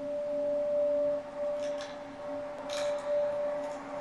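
A sustained drone from a film soundtrack: two steady low tones held throughout, with a few faint clicks.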